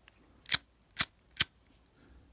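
Three sharp metallic clicks about half a second apart from a Ronson lighter being handled, its metal insert and case knocking and snapping together.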